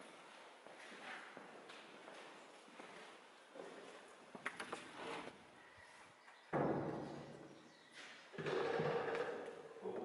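Footsteps on a debris-strewn floor in a large, empty room, with a few sharp clicks a little before halfway and a sudden loud thud about two-thirds of the way in.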